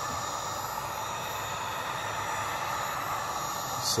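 Wagner heat gun running on its low setting: a steady rush of blown air with faint high tones from its fan. It is blowing over a phone's glass back to soften the adhesive.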